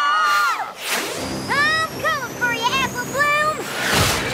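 Cartoon soundtrack: the end of a held scream, a whoosh about a second in, then a character's wavering cries over a steadily rising whistle effect, ending in a sharp burst as the flying pony crashes.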